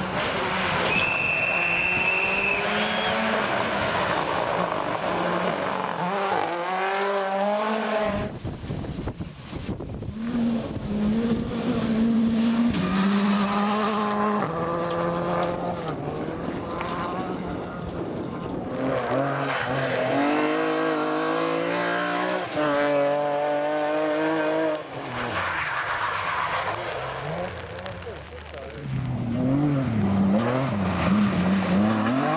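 Rally car engines revving hard as the cars pass one after another, pitch climbing and dropping again through gear changes and lifts.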